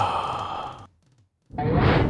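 A long, breathy sigh-like vocal effect from a cartoon snake, fading out just under a second in. After a brief silence, a sudden loud rush of noise starts near the end.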